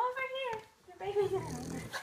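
Two-week-old French bulldog puppy whining: two short high cries, the second about a second in.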